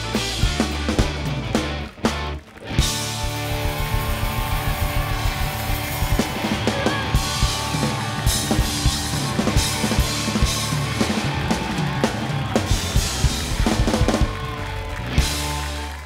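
Live rock band playing: drum kit with bass drum and snare, electric guitars and bass. The band breaks off for a moment about two seconds in, then crashes back in, and the sound drops away near the end.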